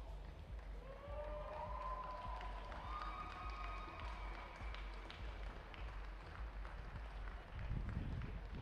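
Stadium ambience on a broadcast feed: a steady low rumble, with a few drawn-out shouted calls or cheers from distant voices between about one and four seconds in, and a low thump near the end.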